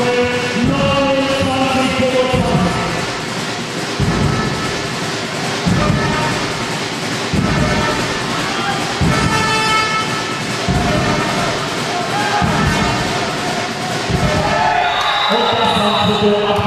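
Music with singing voices and a heavy, regular beat about every second and a half, echoing in a large sports hall, over crowd noise.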